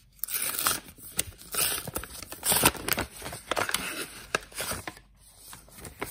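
A paper envelope being torn open and handled by hand: a run of ripping, crinkling paper noises that dies down near the end.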